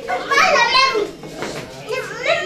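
Children's high-pitched voices calling and chattering, loudest in the first second, with another call starting near the end.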